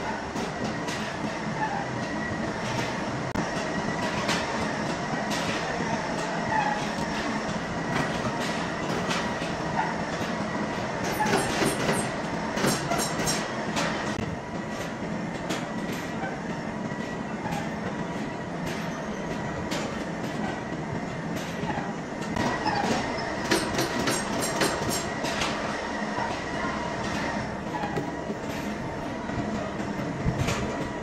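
Continuous machine-shop noise: machinery running with a faint steady whine, overlaid with frequent metallic clanks and rattles as a heavy steel shaft hanging on a crane chain is worked into an old lathe. The clatter thickens twice, near the middle and again later on.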